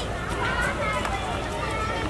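Shouting voices of field hockey players calling out to each other during play, with no clear words.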